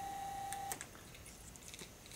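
Small 12 V DC motor running with a steady whine, cut off with a click from the receiver's relay about three quarters of a second in as the remote's button is pressed a second time in latching mode. A few faint clicks follow.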